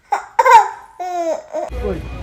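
A toddler girl laughing in two short, high-pitched bursts, each falling in pitch. Near the end a steady low hum starts suddenly.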